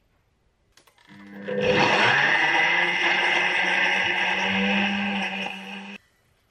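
Countertop blender motor starting up about a second in and running steadily at full speed, blending mango chunks, frozen raspberries and Greek yogurt into a smoothie, then cutting off suddenly at the end.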